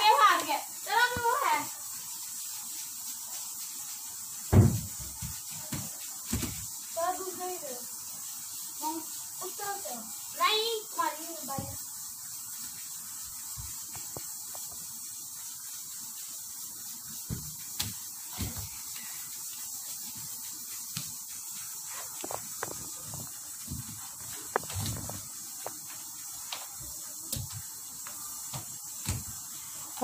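Children's voices calling out now and then over the first dozen seconds, with a loud thump about four and a half seconds in, then scattered light knocks and thumps over a steady background hiss.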